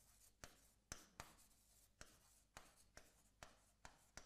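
Faint, scattered ticks and light scrapes of a pen writing on an interactive display's screen, about eight soft taps over the few seconds, otherwise near silence.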